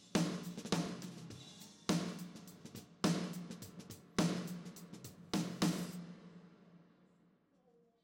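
Playback of a live drum kit recording: a heavy hit about once a second, each ringing out in a large reverb, with lighter hi-hat and cymbal strokes between. Playback stops about six seconds in and the reverb tail fades away.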